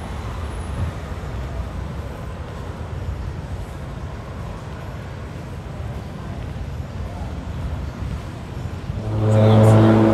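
City street traffic: a steady low rumble of vehicles. About nine seconds in, a loud, steady, low-pitched tone rises over it.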